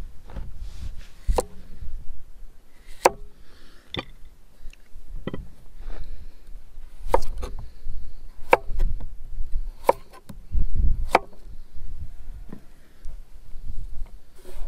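Kitchen knife slicing a cucumber on a plastic cutting board: sharp knocks of the blade meeting the board, about seven cuts spaced a second and a half or so apart.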